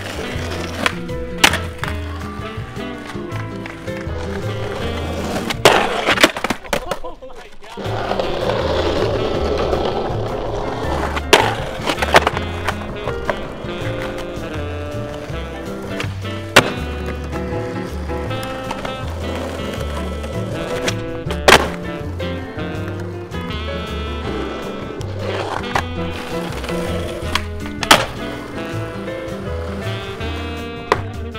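Skateboard urethane wheels rolling on rough concrete, with several sharp wooden pops and landings from the board as tricks are done. Background music with a steady beat plays throughout.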